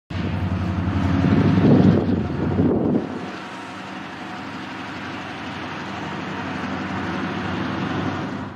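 Diesel locomotive of a Canadian Pacific freight train running as the train approaches: a low, steady engine drone, louder in the first three seconds and then steadier and quieter.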